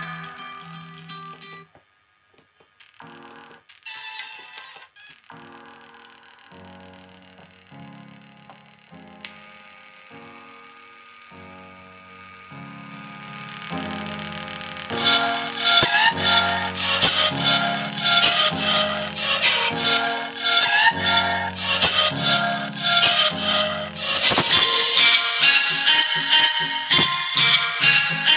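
Music with plucked-string notes played from an MP3 decoder board through a home-built 4440 dual-IC amplifier and small 3 W speakers. It is quiet and sparse at first, then much louder and fuller, with a steady beat, from about halfway as the volume potentiometer is turned up.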